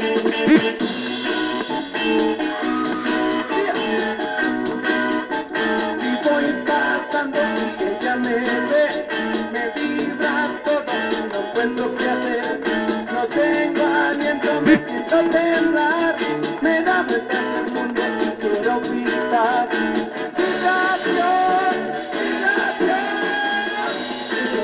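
Mexican garage-rock record playing on a portable record player from a spinning 7-inch single, with guitar and very little bass.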